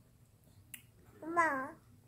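Nine-month-old baby's voice: one short babbled 'umma'-like syllable that rises and falls, starting a little over a second in. A faint click comes shortly before it.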